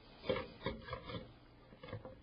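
Faint, scattered knocks and clicks, about five in two seconds, as a Pentium 4 heatsink is handled and set down onto its plastic retention base on the motherboard.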